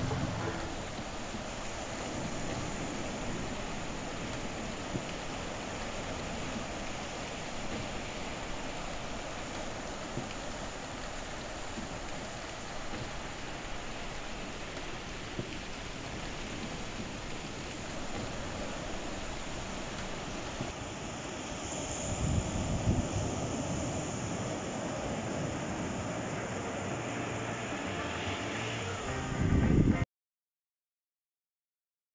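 Surf breaking and washing up a sandy beach, a steady rushing wash, with wind buffeting the microphone in low gusts about two-thirds of the way through and again at the very end.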